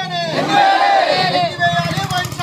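A group of men shouting a protest slogan together, many voices at once, swelling loud about half a second in.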